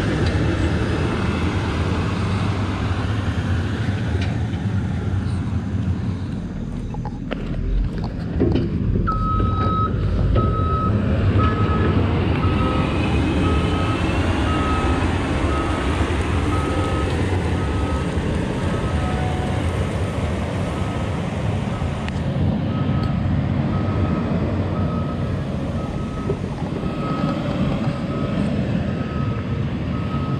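Diesel engine of a wheeled grapple skidder running steadily as it works the muddy road with its blade, with a couple of knocks about seven seconds in. From about nine seconds in, a reversing alarm beeps about once a second.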